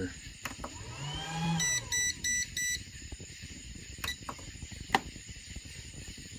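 Four short electronic beeps from an appliance's push-button control panel as a finger presses its keys, followed by two sharp clicks, the second the loudest. A brief hummed 'hmm' comes just before the beeps.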